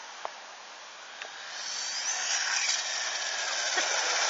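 Traxxas 1/16 E-Revo VXL RC truck on a 3S battery, its brushless motor and drivetrain whining at speed with tyre hiss on asphalt as it drives closer, growing steadily louder from about a second and a half in. The motor's pitch glides up and down with the throttle.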